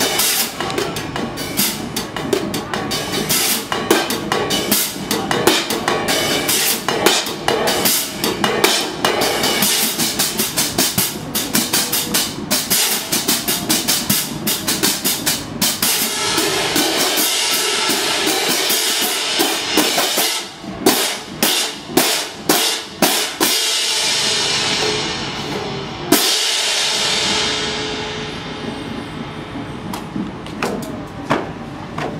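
A drum-corps line of hand-held marching crash cymbals playing an ensemble passage: fast, dense crashes, then a run of separate hits. About four seconds from the end comes one last crash, left to ring and fade.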